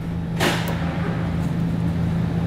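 A short scraping rush about half a second in as a steel exhaust hanger rod is worked into its rubber isolator and the exhaust is pulled over, over a steady low hum.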